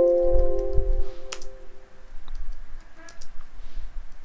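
A computer alert chime sounds several times in quick succession and rings out over the first two seconds, then a few computer keyboard keystrokes click.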